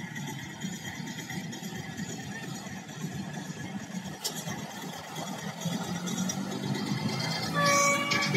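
Heavy trucks passing on a road across a canal at a distance, a steady rumble of diesel engines and tyre noise. Shortly before the end a loud pitched sound made of several steady tones begins.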